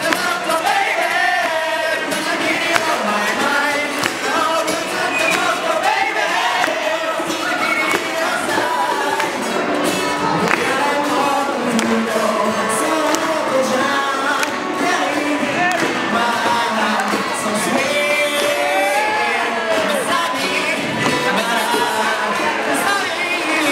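A man singing a pop song live through a handheld microphone, accompanied by acoustic guitar.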